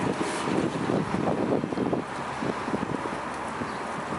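Wind buffeting the microphone, a steady rushing noise with irregular low gusts, a little stronger in the first two seconds.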